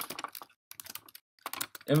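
Typing on a computer keyboard: a quick run of key clicks, a short pause about half a second in, then more scattered keystrokes.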